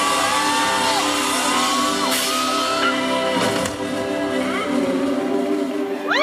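Live band playing the closing bars of a song in a large hall: held electric guitar chords with bending notes over the band, with a couple of cymbal crashes. Fans shout over the music.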